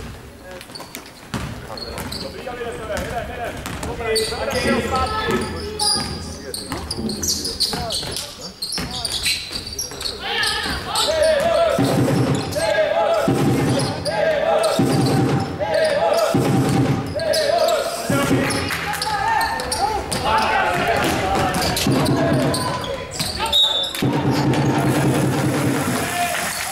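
Basketball game on a wooden court: a basketball bouncing amid crowd voices. From about halfway, spectators cheer in a steady rhythm, about one beat a second.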